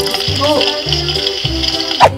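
Background music with a steady beat over a steady high electronic hiss from a toy kitchen stove, set off by pressing its burner button.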